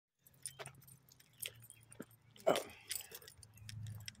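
A bunch of keys on a ring jangling and clinking irregularly as it is carried in the hand, the loudest clink about halfway through, over a faint steady low hum.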